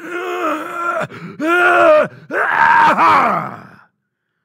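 A man's loud, drawn-out groaning cries in three long swells, imitating a manifesting demon. The second rises and falls in pitch, and the last is held and then trails away, acting out the manifestation peaking and dropping off as the spirit leaves.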